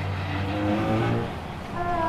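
Car engine sound effect as a small car drives along a road, dying down about a second and a half in.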